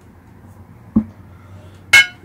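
Tabletop handling sounds: a short dull thump about a second in, then a sharp, ringing clink near the end as a brush knocks against a ceramic brush plate.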